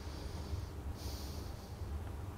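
A person breathing out audibly twice, each breath lasting under a second, over a low steady hum.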